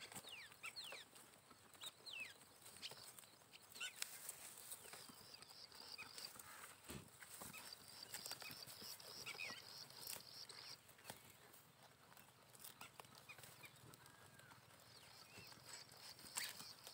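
Goats grazing: faint tearing and chewing of grass, heard as scattered small clicks, with faint high chirps now and then.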